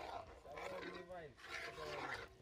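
A man's voice, drawn out and without clear words, heard twice.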